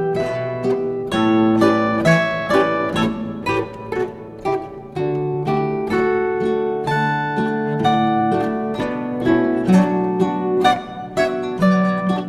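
Instrumental music of plucked strings: a quick, steady run of ringing notes over lower, longer-held notes, with a short quieter passage near the middle.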